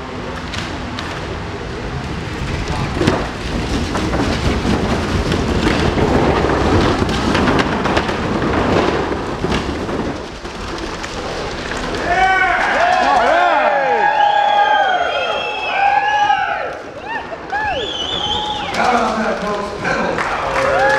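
A pedal bicycle circling the vertical wooden boards of a wall-of-death drome, its tyres making a steady rumble with scattered knocks from the planks. About two thirds of the way through, the crowd starts whooping and cheering over it.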